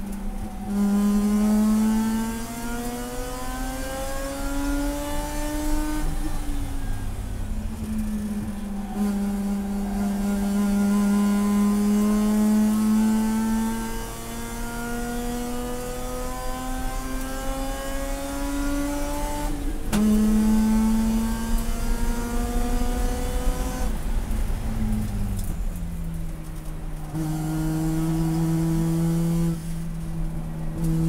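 Race car engine heard from inside the cockpit, pulling under load with its pitch climbing slowly through each gear and dropping sharply at upshifts about six and twenty seconds in. Near the end the pitch falls again and settles to a steady drone.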